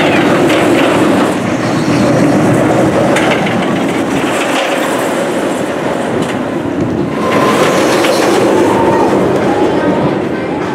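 Hybrid wooden-and-steel roller coaster train running along its steel I-Box track with a loud, steady rumble as it passes close by. The rumble swells again about seven seconds in, with a faint whine from the track.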